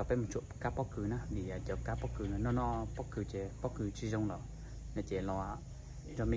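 A man talking in Hmong, his voice rising and falling in short phrases, over a steady low background hum.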